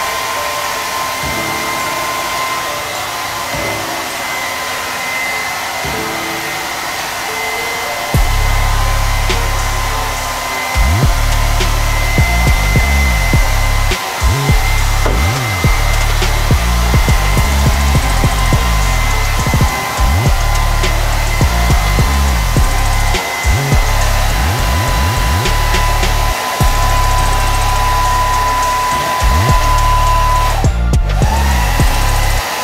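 Hand-held hair dryer blowing on damp hair, running with a steady whine over the rush of air. From about eight seconds in, a deep low rumble joins it and cuts out briefly several times.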